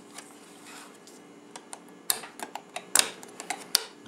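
Steel butter knife scraping and clicking against the rim of stacked tin tuna cans as it folds down the lip of a thin aluminum can-sheet disc. Faint scraping at first, then a run of sharp ticks from about halfway, with a few louder clicks.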